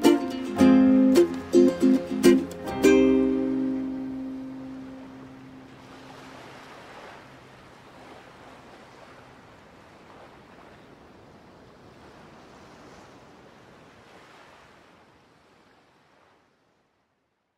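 Ukulele playing its last few chords of a slow instrumental in C minor, the final chord ringing out and dying away over about the first four seconds. A faint, surf-like noise with slow swells follows and fades out near the end.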